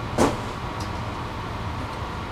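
A steady low hum, with one brief swish of plastic wrapping or fabric being handled about a quarter of a second in.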